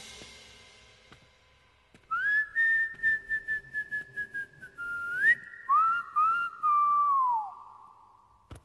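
A comic whistled tune comes in about two seconds in: sliding up into long held notes and then gliding down near the end, over light, evenly spaced ticking percussion for the first few seconds.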